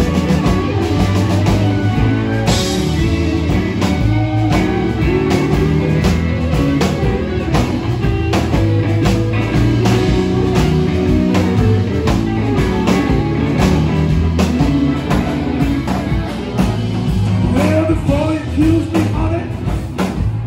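Live band jamming: several electric guitars over a drum kit, with a voice singing along.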